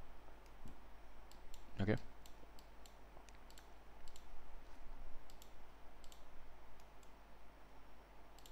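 Light computer mouse clicks, irregular and scattered, about a dozen.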